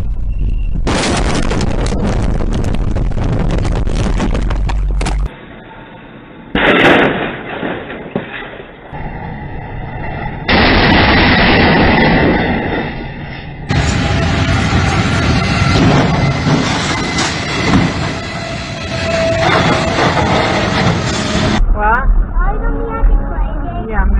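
Several crash-video clips spliced back to back, each with its own recorded audio of vehicle and road noise that cuts off suddenly at each change, with loud crash bangs. About halfway through, a box truck's roof hits and tears open on a low railroad bridge.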